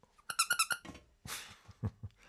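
A squeaky plush toy squeezed against the face, giving a quick run of high squeaks, followed by a breathy exhale.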